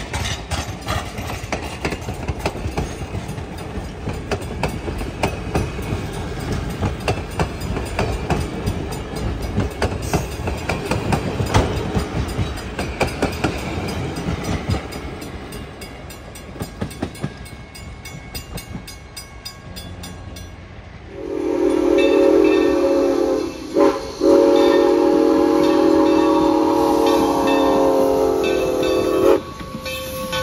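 Passenger coaches rolling past on the rails, their wheels clicking over the rail joints. About two-thirds of the way in, a steam locomotive's whistle blows a short blast, then a long steady blast lasting several seconds.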